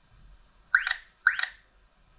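Two short electronic tap sounds from an XGODY 706 GPS navigator's touchscreen as its on-screen buttons are pressed, about half a second apart.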